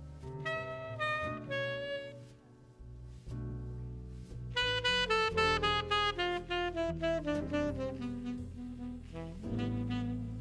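Tenor saxophone playing a jazz melody over upright bass: a short phrase of a few notes, then from about halfway a long run of quick notes stepping steadily downward.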